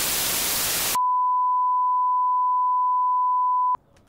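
TV static hiss for about a second, then cut to a single steady electronic beep tone that holds for nearly three seconds and stops abruptly with a click.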